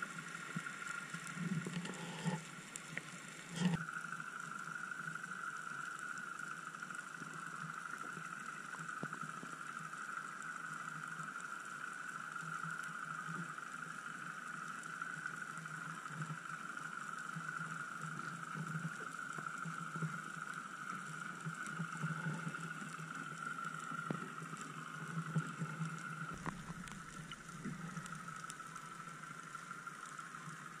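Underwater sound picked up through the water by a diving camera: a steady high-pitched hum over a faint hiss, with a few sharp clicks and knocks in the first four seconds.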